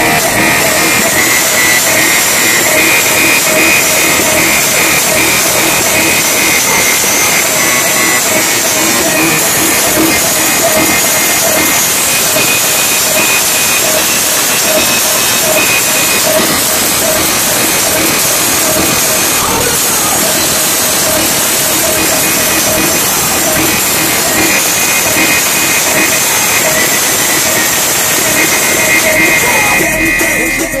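A Lada Niva's competition car-audio system, with a wall of subwoofers, plays music at extreme volume for a sound-pressure-level run. It is loud and steady throughout, so loud that it comes across as a harsh, distorted wall of sound. The run measures about 124.3 dB.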